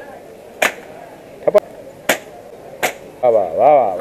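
Air rifle shots and balloons popping at a balloon-shooting stall: a series of sharp cracks, including a close double near the middle. Near the end a person's voice exclaims with rising and falling pitch.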